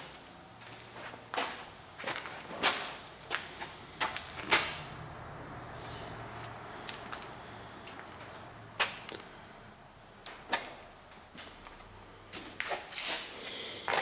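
Irregular sharp clicks and knocks, about a dozen with uneven gaps and a cluster near the end: handling and movement noise from someone walking about with a handheld camera.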